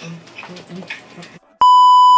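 Broadcast test-tone beep of the kind played over TV colour bars: one loud, steady, high beep that cuts in suddenly about one and a half seconds in, after a moment of voices.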